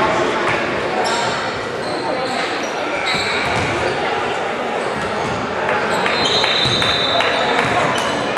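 Indoor basketball game sound in an echoing gym: a ball bouncing on the hardwood court and sneakers squeaking, over the spectators' chatter.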